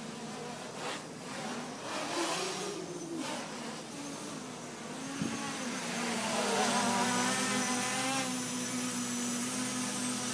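Armattan 290 quadcopter's brushless motors and propellers buzzing in flight, the pitch swinging up and down with the throttle during acro manoeuvres. From about halfway it grows louder and steadier as the quad comes in low and holds a hover close by.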